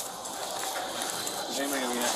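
Faint, indistinct speech in the background over steady room noise.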